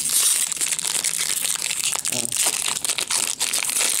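Foil wrapper of a Topps baseball card pack crinkling and tearing as it is pulled open by hand, a dense continuous crackle.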